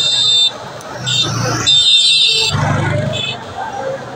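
Several short bursts of a shrill, buzzing high tone, the longest lasting about a second, between people's voices at the scene of a large building fire.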